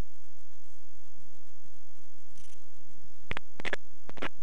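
Muffled, steady low rumble of wind and airflow on the open ultralight aircraft in flight, with three sharp clicks or knocks in the last second.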